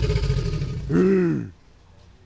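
A man's low, drawn-out guttural 'uhh' grunt, his voice arching up and down in pitch about a second in and cutting off shortly after.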